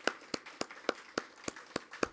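Hand clapping close to the microphone at an even pace of about three to four claps a second, over fainter clapping from a room.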